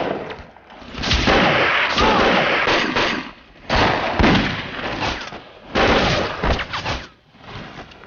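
Battle gunfire: volleys of rifle and machine-gun fire in three long stretches, with short lulls about half a second in, around three and a half seconds and near seven seconds.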